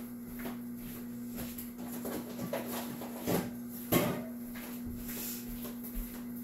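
Pampered Chef electric ice cream maker running with a steady hum as its paddle churns the mix, with two short knocks about three and four seconds in.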